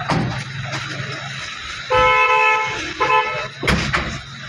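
A car horn honking: one honk of about a second, then a shorter second honk. A sharp knock comes near the end.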